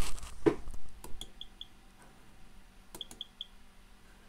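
Keyboard clicker of an IBM 3488 InfoWindow display station sounding twice: each time a keystroke click is followed by a quick run of about four short, high ticks. The clicker is set to one of its highest volume settings, where it does four clicks per keystroke.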